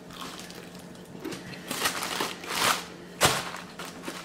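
Close-up crunching and chewing of a crispy-breaded fried chicken wing: a handful of crunches in the second half, the sharpest one near the end.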